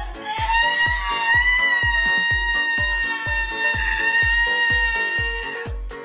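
A man's long, high-pitched scream held for about five seconds while he strains through an overhead dumbbell press, over background music with a steady beat.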